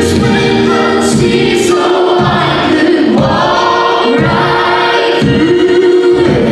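Live contemporary worship song: women's voices and many voices together singing long held lines over keyboard and bass guitar, with the bass dropping out briefly several times.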